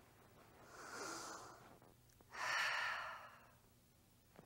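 A woman letting out two relaxed, breathy sighs: a soft one about a second in and a longer, louder one about halfway through.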